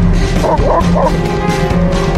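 Alaskan Malamute sled dogs in harness whining, three quick cries in a row within the first second, over steady background music. The whining is the vocal dogs rallying the team to pull.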